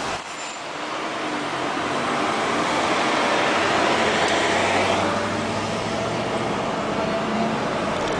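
City road traffic: vehicle engine and tyre noise that swells to a peak about four seconds in and then carries on steadily.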